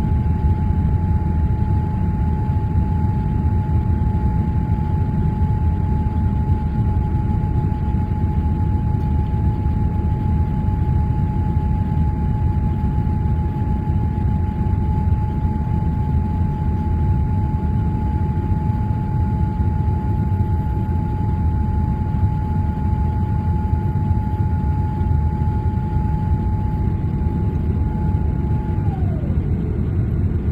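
Steady low roar of a Boeing 787 Dreamliner's engines and rushing air, heard from inside the passenger cabin during the climb after takeoff. A steady whine sits above the roar and slides down in pitch shortly before the end.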